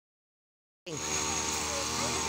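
Silence, then a little under a second in the live sound cuts in: people's voices and a laugh over steady outdoor background noise, with a faint steady high whine.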